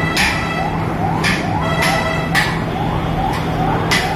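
Bakery machinery running with a steady hum and a rhythmic rising squeak about three times a second, with clattering now and then.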